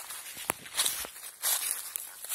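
Footsteps crunching through dry leaf litter, about four steps over two seconds, with one sharp crack about a quarter of the way in.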